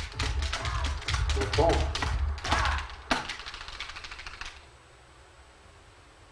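A small group of people clapping fast and unevenly for a scored point, with a voice or two calling out, dying away about four and a half seconds in.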